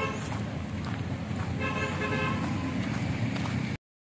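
A vehicle horn toots twice, each a steady held note under a second long, over a constant low rumble of road traffic. The sound cuts out abruptly near the end.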